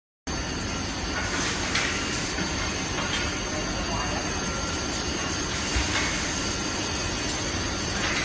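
Solar panel assembly line machinery running: a steady mechanical din from conveyors and automated handling equipment, with a few brief high-pitched squeaks about one and a half, three and six seconds in.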